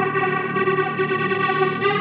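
Background music: an effects-laden guitar holding a sustained chord that shifts to a new chord near the end.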